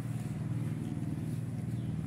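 A steady low motor hum, a few level tones with no rise or fall.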